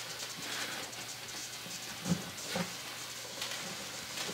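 Steady hiss of steam escaping from a steam needle inserted through a hole at a fret into an acoustic guitar's neck joint, softening the glue for a neck reset. Two faint short sounds come about halfway through.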